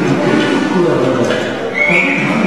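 Voices with devotional music behind them, in a large reverberant hall; a short high tone comes in near the end.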